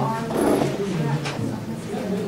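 Many people talking at once in a large lecture room: a steady babble of overlapping voices, swelling louder about half a second in.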